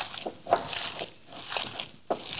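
Hands kneading a minced-meat mixture in a bowl, making short, irregular wet noises as the mass is squeezed and worked together.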